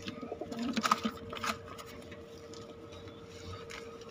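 Domestic pigeon cooing low and briefly in the first second and a half, with a few light knocks. A faint steady hum runs underneath.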